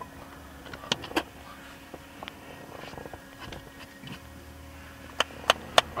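Sharp taps, two in the first second or so and then a quick run of them at about three a second starting near the end, over a faint steady low hum inside a car.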